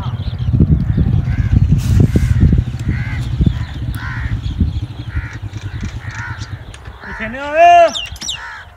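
Crows cawing over and over, roughly once or twice a second, over a heavy low rumble during the first half. Just before the end comes one loud, drawn-out call that rises and falls in pitch.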